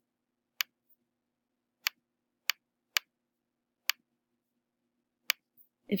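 Computer mouse clicking: six short, sharp clicks at uneven intervals over a very faint steady hum.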